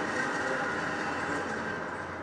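Steady noise from the ventilation fans of an indoor shooting range, a continuous rushing sound with a low hum and no gunshots.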